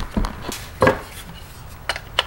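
A lithium-ion tool battery and its plastic charger being handled on a wooden workbench: a few sharp hard-plastic clicks and knocks, the loudest just before a second in.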